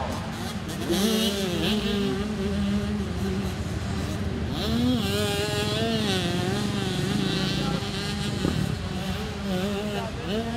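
Several motocross bike engines running together at the starting line, their pitch wavering and rising and falling as the throttles are worked.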